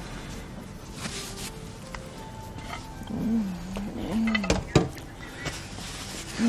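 A woman's drawn-out, wavering hummed 'mmm' of enjoyment while tasting food, with a couple of light clicks of a fork on a plate near its end.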